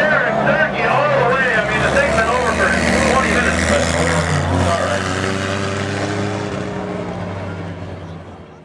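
Four-cylinder dirt-track race cars running around the oval, their engines a steady drone with a climb in pitch about halfway through. A voice is heard over them in the first few seconds, and the sound fades away near the end.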